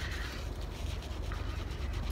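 Hands rubbing and rolling a soapy wool felt egg between the palms, a steady wet rubbing noise, at the rubbing stage of wet felting as the felt is worked tight.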